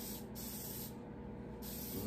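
Aerosol spray paint can spraying a high-pitched hiss in several short bursts with brief pauses between them.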